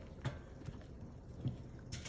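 Horse hooves stepping: a few faint, irregular clops.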